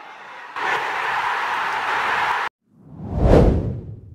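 Editing sound effects for a title transition: a loud rush of noise cuts off abruptly about two and a half seconds in. Then a whoosh swells and fades with a deep boom under it.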